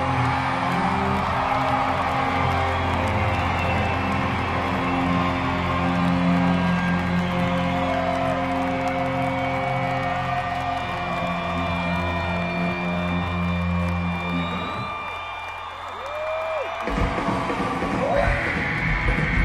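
Live rock band playing a sustained, droning passage of held notes, with the crowd cheering and whooping over it. The low drone drops out about fifteen seconds in, and the band comes back in fully near the end.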